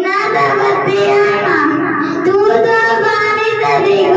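A young boy singing a song into a handheld microphone, holding long notes that slide up and down in pitch.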